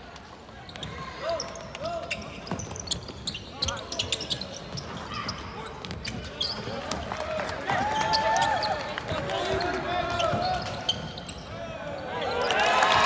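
Live courtside sound of a basketball game: the ball bouncing on a hardwood court and sneakers squeaking as players cut and stop, with voices in the background. The squeaks grow busier and louder about two-thirds of the way in.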